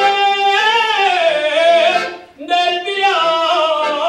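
A male solo voice singing a Riojan jota in long, high, wavering held notes, breaking off briefly about two seconds in before starting the next phrase.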